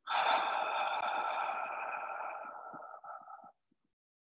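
A long audible breath out through the mouth, lasting about three and a half seconds. It is the exhale of a 'bunny breath' yoga breathing round, which follows three short sniffs in through the nose. It starts strongly, fades a little, and cuts off suddenly.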